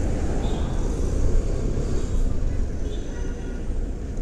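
Suzuki Burgman Street 125 scooter's single-cylinder engine running while riding slowly in city traffic, a steady low rumble mixed with road and traffic noise.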